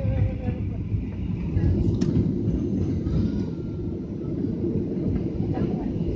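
Steady low rumble inside the cabin of a Ryanair Boeing 737 rolling along the ground: jet engine noise mixed with the wheels running on the tarmac.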